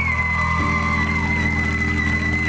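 A woman singing a very high whistle-register note, a thin pure tone that slides down slightly right at the start and then holds steady, over sustained backing music whose chord changes about half a second in.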